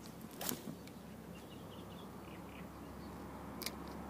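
A spinning rod being cast and the reel readied: a brief swish about half a second in, faint high chirps in the quiet background, and one sharp click near the end.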